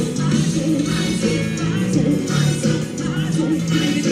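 Live axé music played loud from a carnival stage truck, with a steady beat.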